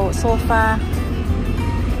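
A woman speaks a single word over background music, with a steady low rumble underneath.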